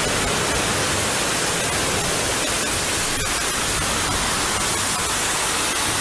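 Floodwater pouring and rushing in a loud, even hiss with no breaks.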